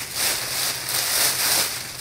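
Plastic shopping bag crinkling and rustling as it is handled and opened.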